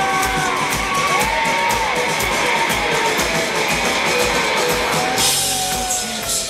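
Live rock band playing an instrumental passage: electric guitar lead with bent, gliding notes over a steady drum-kit beat.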